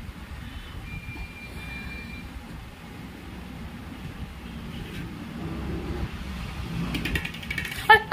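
Steady low background rumble with a faint thin high tone about a second in; a child's voice cuts in at the very end.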